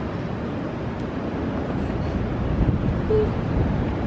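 Steady low wind noise buffeting a handheld camera's microphone over the background sound of city street traffic.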